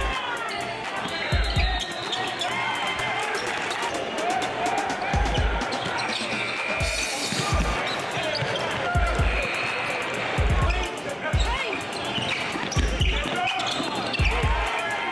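Hip-hop backing track with deep bass kicks about every second and fast hi-hats, with a voice over the beat.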